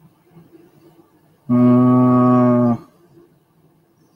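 A man's low hum held on one steady note for just over a second, starting about a second and a half in.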